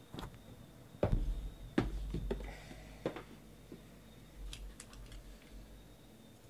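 Small cardboard trading-card boxes being handled and restacked by hand, giving a series of knocks and taps. The loudest comes about a second in, with lighter taps near the end.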